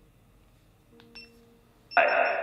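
A faint short electronic beep about a second in, then near the end a sudden loud burst of harsh static from a sweep-style ghost box app scanning audio.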